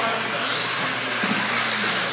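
Radio-controlled 4WD buggies racing on a carpet track: a steady hiss of motors and tyres, with a high motor whine rising and falling in the second half.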